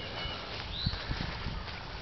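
Outdoor background noise with a few soft low thumps, between about one and two seconds in, and faint short high chirps near the start.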